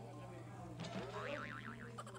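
Comic cartoon sound effect edited into the show: a quick rising sweep just before a second in, then a fast wobbling, warbling tone that runs until near the end, over faint talk.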